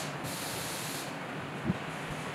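Tower air cooler's fan running, a steady rush of air. A brief low thump comes about three-quarters of the way through.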